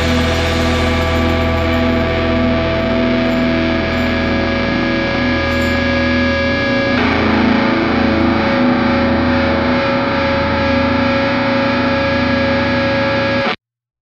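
Garage rock music ending on a long, held distorted electric guitar chord, its ringing notes shifting about halfway through. The sound cuts off abruptly near the end.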